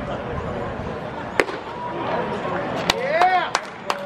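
A pitched baseball smacking into the catcher's leather mitt, one sharp pop about a second and a half in, over crowd chatter. Near the end a voice in the crowd gives a call that rises and falls, with a few scattered claps.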